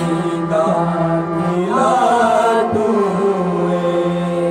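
Men's voices singing a slow worship song together, accompanied by a harmonium that holds a steady drone under them; the singing swells about two seconds in.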